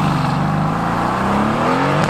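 Mercedes-AMG GT S's 4.0-litre twin-turbo V8 accelerating away. The engine note sags slightly, then climbs steadily in pitch as the revs rise.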